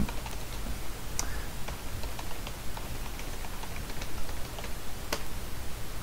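Typing on a computer keyboard: scattered, irregular keystrokes, with louder key presses about a second in and again near the end.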